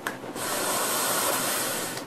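Steady airy hiss of a long draw on an iCloudcig Fishbone rebuildable dripping atomizer, air rushing in through its large airholes, lasting about a second and a half after a brief click at the start.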